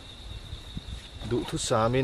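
Steady, high-pitched insect trill, a single unbroken tone.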